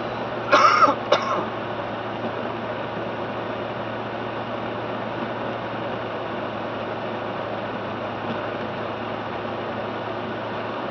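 Steady road and engine noise of a car driving on a wet highway, heard from inside the cabin. About half a second in, someone in the car clears their throat in two quick rasps.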